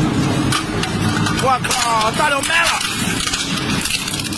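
Industrial twin-shaft shredder running steadily, its cutter shafts turning with a low mechanical rumble and a few sharp clicks.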